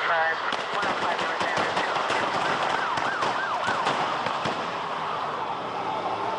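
Police sirens wailing with quick rising and falling pitch, overlaid by a rapid run of gunshots from about half a second in until near the end.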